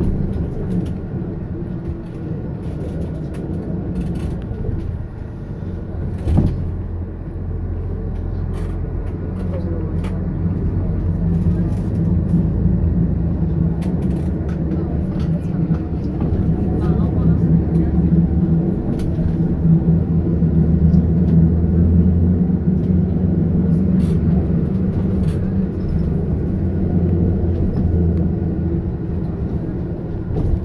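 Bus engine and road noise heard from inside the cabin while climbing a hill road: a steady low drone that grows louder for several seconds past the middle, with light rattles and a single sharp knock about six seconds in.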